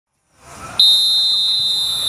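Referee's whistle blown for kick-off: one long, steady, high-pitched blast that starts abruptly just under a second in.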